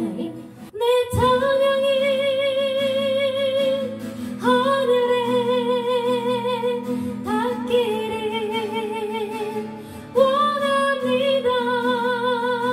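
A woman singing a worship song with acoustic guitar accompaniment. She sings long held notes with vibrato, in four phrases.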